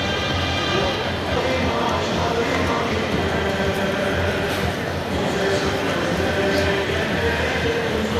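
Music playing over a steady din of voices and crowd noise.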